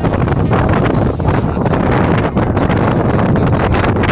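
Strong wind buffeting the phone's microphone, a loud, continuous rumbling noise that swells and dips.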